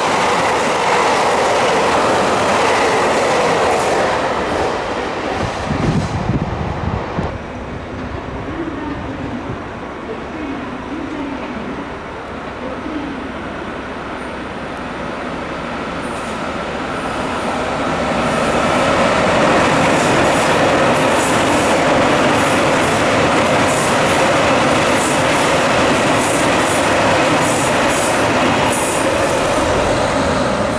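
An electric train runs past the platform for the first several seconds, with a low thump about six seconds in, and the sound then dies down. From about sixteen seconds a KiHa 261 series diesel express train comes in and passes. Its engines and running gear grow loud, and its wheels click rhythmically over the rail joints.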